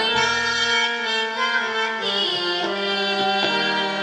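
Harmonium playing long held notes and chords in the opening of a devotional bhajan, with a few light drum strokes underneath.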